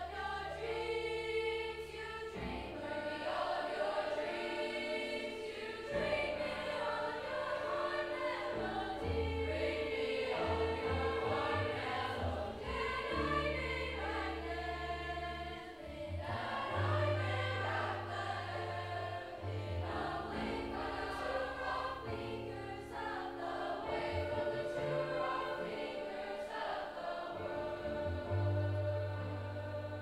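Mixed youth choir singing in parts, with an accompanying instrument holding long low bass notes beneath the voices.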